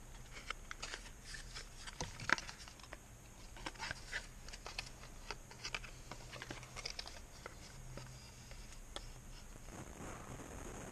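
Cardboard box and packaging handled and opened by hand: faint scattered clicks, scrapes and rustles, with one sharper knock a little over two seconds in.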